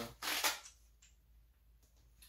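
A black screwdriver bit case being handled and opened: a short rustling burst a quarter second in, a faint click about a second in, then quiet.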